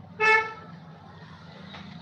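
A single short horn beep, loud and evenly pitched, lasting about a third of a second, over a steady low hum.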